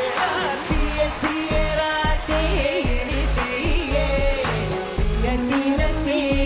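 A song sung with a band backing. A heavy bass beat comes in about a second in.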